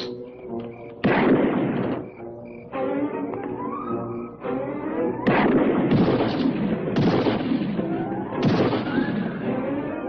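Dramatic film-score music with rising lines, broken by about six sudden loud gunshots spaced a second or two apart during a shootout.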